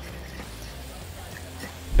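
Faint sizzling of egg frying in a hot wok as it is scrambled, over a low steady rumble, with a brief low bump near the end.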